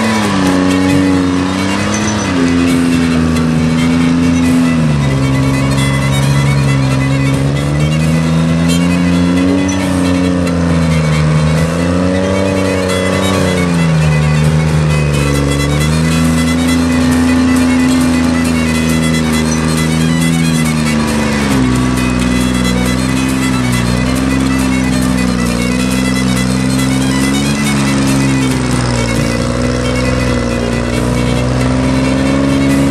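Forestry skidder's diesel engine working under load, its pitch rising and falling in smooth swells every couple of seconds as it pulls through mud. A deeper rumble comes in about two-thirds of the way through.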